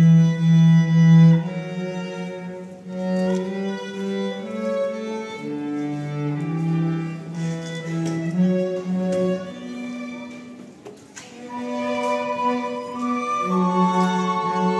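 A small live string ensemble, violin and cello, playing a slow piece in sustained bowed notes, with a brief drop in level between phrases about three-quarters of the way through.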